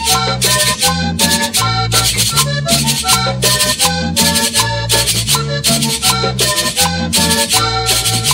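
A vallenato conjunto playing an instrumental passage: a lively accordion melody over a repeating bass line, driven by a steady rattling percussion beat.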